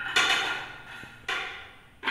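Two knocks about a second apart, each ringing briefly as it fades: pieces of banana dropped into a plastic blender jar.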